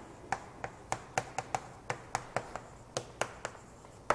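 Chalk writing on a chalkboard: a quick, irregular run of faint, sharp taps and short scratches as each stroke of the characters lands, about four a second.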